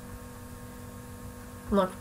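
Steady electrical mains hum with faint hiss under a pause in speech; a short spoken word comes near the end.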